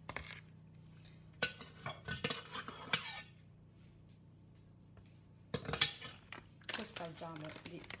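Metal spoon clinking and scraping against an aluminium foil baking tray as béchamel is spooned into it, in clattery bursts with a quiet stretch in the middle.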